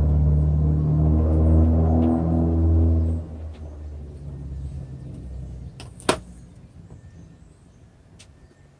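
A low, steady engine drone, like a motor vehicle running close by, fades away about three seconds in. A single sharp knock comes about six seconds in.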